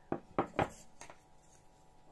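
A few short knocks in the first second: a carved wooden gingerbread mould set down and shifted on a tabletop.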